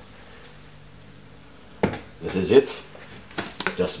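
Low room tone, then a single sharp click about two seconds in, followed by a man's voice in short snatches and a few lighter clicks.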